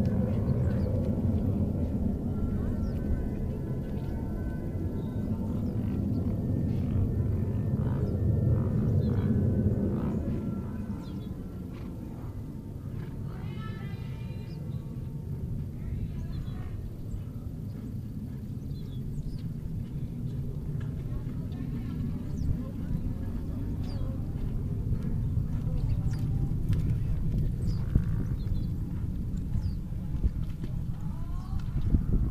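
Outdoor arena ambience: a steady low rumble on the microphone, a little quieter after about ten seconds, with faint distant voices and music above it.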